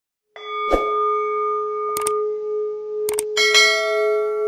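Synthetic bell chime ringing on in one sustained note, broken by several sharp clicks, with a second, brighter chime struck about three and a half seconds in. It is the sound effect of a subscribe-button and notification-bell animation.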